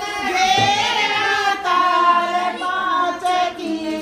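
Group of women singing a jakdi, a folk wedding song, in high voices with long held notes.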